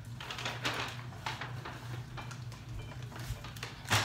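Irregular rustling and crinkling as a bunch of eucalyptus in a plastic sleeve is picked up and handled, over a steady low hum, with a sharp knock near the end.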